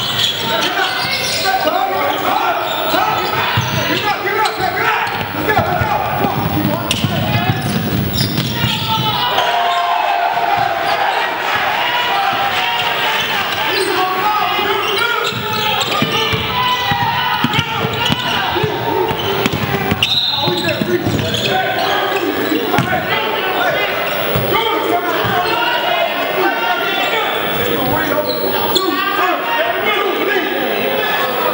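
Basketball game sounds on a hardwood gym floor: a ball bouncing over and over amid players' and spectators' shouting voices, all echoing in a large hall.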